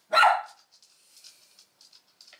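A single short dog bark.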